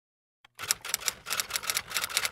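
Typewriter keys clacking in quick succession, a typing sound effect, starting about half a second in after dead silence.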